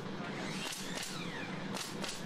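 Hand screed board scraping across wet concrete as it is pulled to strike off the slab, with a brief swish near the end.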